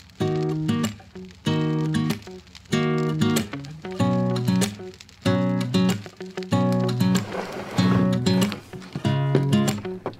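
Background music: an acoustic guitar strumming chords at a steady rhythm, each chord ringing out before the next.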